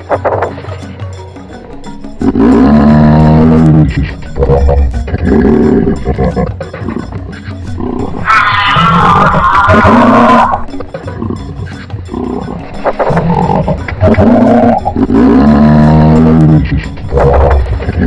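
A giraffe making a series of low-pitched drawn-out calls, each lasting a second or two. The loudest, about eight seconds in, is higher and wavering. Background music plays underneath.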